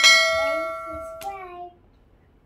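Notification-bell 'ding' sound effect from a subscribe-button animation, struck once and ringing as it fades over about a second and a half, with a click partway through. A small child's voice is faintly heard under it.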